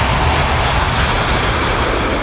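A loud wash of synthesized white noise in an electronic dance track's ending, with no beat or bass line under it, slowly fading.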